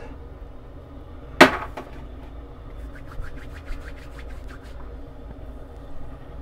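A single sharp knock about a second and a half in, then a run of soft, quick pats, about four or five a second, as after-shave tonic is patted onto the face with the hands.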